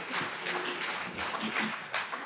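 Scattered clapping from the audience with some murmuring, a dense, irregular patter of hand claps after the vote result.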